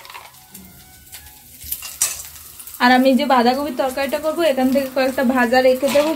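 Peanuts going into hot coconut oil in a kadai, a faint frying sizzle with a few sharp utensil clicks. About three seconds in, a much louder, drawn-out pitched sound with wavering tones comes in and covers it.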